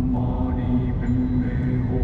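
Chant-like music: a held, low-pitched vocal drone with higher voice lines shifting pitch about every half second, over a steady low rumble from the moving car.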